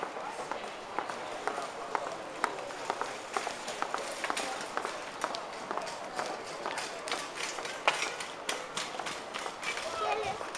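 Footsteps of several passing pedestrians on hard paving tiles: quick, irregular shoe and heel clicks that grow denser in the second half, the sharpest a little before the end. Indistinct voices of passers-by murmur underneath.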